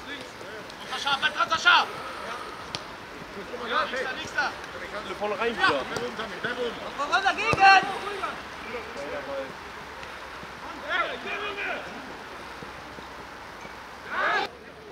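Footballers' shouts and calls on the pitch, in short bursts of voice over a steady outdoor hiss, with a single thud about halfway through.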